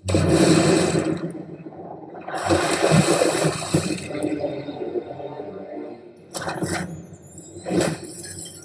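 Film-teaser sound effects playing over speakers: a heavy hit at the start, a loud rushing water splash around the third second, and two sharp impacts near the end.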